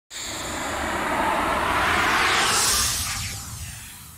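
Logo-intro sound effect: a loud rushing whoosh that swells for about two and a half seconds, then fades away.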